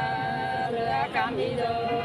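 Unaccompanied voice singing a sli, the Nùng people's folk song, in long drawn-out held notes with brief wavering turns between them.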